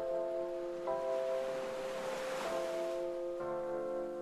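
Background music of sustained chords that change every second or so, with a rushing swell that rises and fades in the middle.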